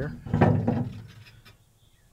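Curtis aluminum canopy's metal mounting bracket being dropped into its slots on the tractor's roll bar: a short clunk and scrape about half a second in that fades within a second.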